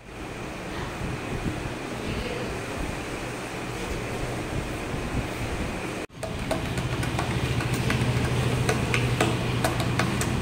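Steady fan and room noise from ceiling and exhaust fans running. About six seconds in it gives way to a lower steady hum, and several short sharp clicks and taps come as a plastic takeaway bowl and its clear lid are handled on a stone tabletop.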